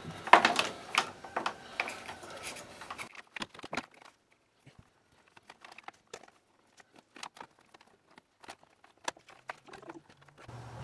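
Electrical cords and a small plastic controller being handled and moved about: rustling with many light clicks and taps, busiest in the first three seconds, then only a few faint clicks.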